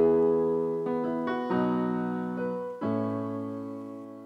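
Digital keyboard with a piano sound playing a slow introduction: a chord struck at the start, then new chords about a second in, around a second and a half, and near three seconds, each left to ring and fade slowly.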